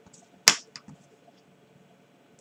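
A single sharp click about half a second in, followed by a few faint ticks.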